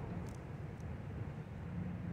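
Steady low rumble of distant road traffic.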